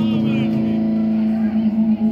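A steady, sustained note with a stack of overtones from the band's amplified gear over the PA, with a voice heard briefly at the start. From about one and a half seconds in, the note's level starts to waver.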